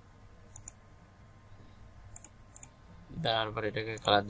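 Computer mouse clicking: three quick double clicks spread through the first three seconds. A man's voice starts speaking near the end.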